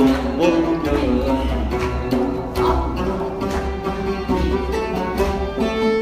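An oud plucked in a flowing Turkish Sufi melody, with a hand drum sounding low beats under it.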